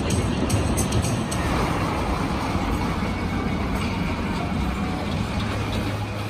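Arrow Dynamics steel looping roller coaster train running along its track: a steady rumble that fades slightly as it goes.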